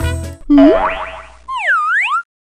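Cartoon sound effects: a quick upward swoop about half a second in, then a wobbly boing that slides down and back up near the end. Upbeat music cuts off just before them.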